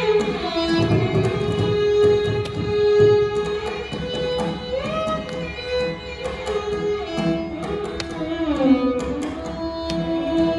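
Carnatic violin ensemble playing in unison in raga Amritavarshini: bowed melody lines with held notes that slide between pitches. Mridangam strokes accompany it throughout.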